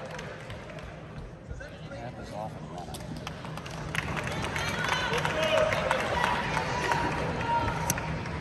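Indistinct talk of people in a sports arena, louder from about halfway through, with a few short knocks.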